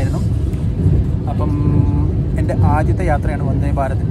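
Steady low rumble of an electric train coach, with voices speaking briefly over it twice: once about a second and a half in, and again near three seconds.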